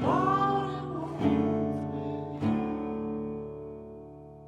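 Indie folk music: acoustic guitar chords strummed three times, about a second apart, each left to ring before the sound fades away.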